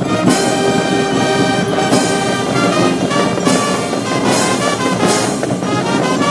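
A brass military band playing ceremonial honors music with sustained chords, struck up just after the honor guard's command to present arms.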